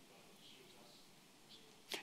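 Near silence: room tone with a faint, distant voice, likely an audience member calling out an answer.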